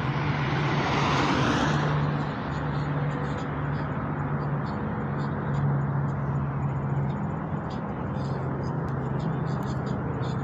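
Steady rushing noise with a low hum, like a running vehicle, swelling briefly in the first two seconds.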